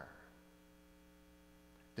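Near silence: a low, steady electrical mains hum in the audio feed, with the last of a man's voice dying away at the very start.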